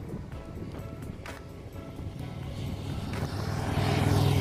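A touring motorcycle's engine approaching, its low steady drone growing louder through the second half as the bike draws near.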